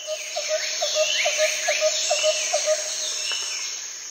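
Birds calling: a fast run of short repeated notes, about five a second, with higher chirping calls over it, dying away near the end.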